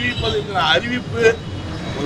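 A man speaking Tamil in short phrases with pauses, over a steady background of road traffic noise.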